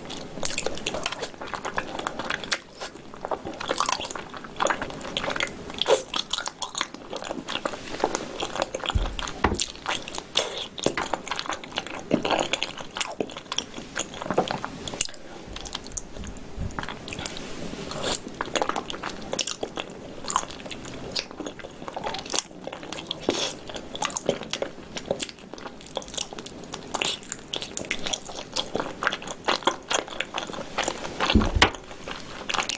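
A person biting and chewing pieces of spicy braised pig's tail, heard up close as a steady, irregular run of short clicks and smacks.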